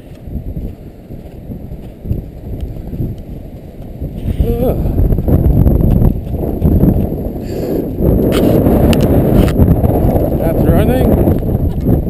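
Footsteps tramping up a snowy slope with wind rumbling on the microphone, louder from about halfway through, with a brief voice or laugh in the middle and again near the end.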